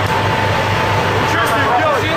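Fishing vessel's engine and deck machinery running steadily, with a low throb about four times a second and a steady whine. Short rising-and-falling cries sound over it, mostly in the second half.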